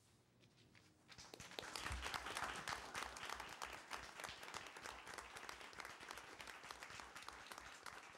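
A roomful of people applauding. The clapping starts about a second in, is loudest soon after, and slowly thins out.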